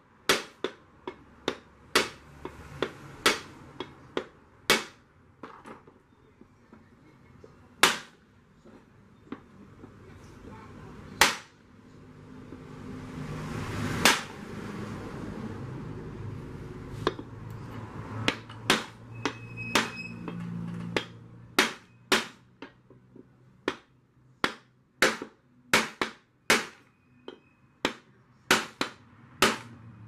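Sharp hammer knocks on a wooden block held against an aluminium pressure-cooker lid, beating the lid back into shape: single blows about a second apart, sometimes in quick runs. A rising and fading rush of noise swells under the blows in the middle.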